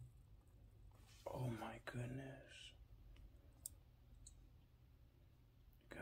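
Near silence broken by a man's voice briefly murmuring a few words about a second in, then a couple of faint clicks.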